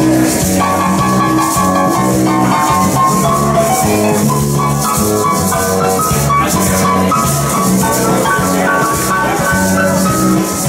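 Live jazz band playing without vocals: electric bass and electric keyboard, with maracas shaken in a steady rhythm on top.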